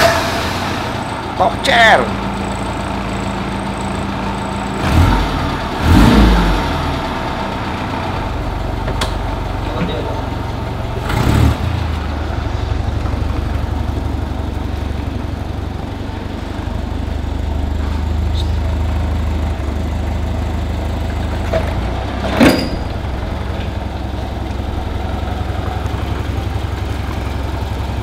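Classic Fiat 500's small air-cooled two-cylinder engine, just started, running steadily as the car is driven slowly around a paved yard, with a few short louder sounds on top.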